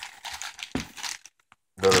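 Clear plastic bag around a cordless reciprocating saw crinkling as the saw is handled, stopping briefly about a second and a half in before a louder rustle near the end.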